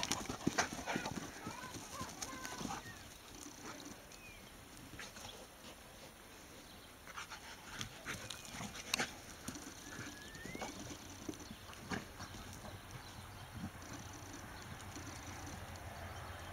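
A Caucasian Shepherd puppy and a Spanish Mastiff romping together on grass and dirt: irregular thuds and scuffles of paws and bodies. They are loudest near the start and about nine seconds in.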